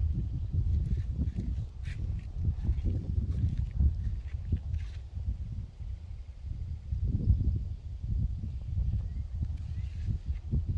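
An irregular low rumble on the microphone that keeps rising and falling, with a few faint high ticks.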